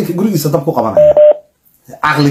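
A man talking, then a loud electronic beep about a second in, one steady tone lasting about a third of a second.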